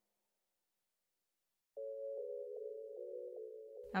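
Silence, then from a little under two seconds in a steady low hum with faint regular ticks, dipping slightly in pitch before it stops.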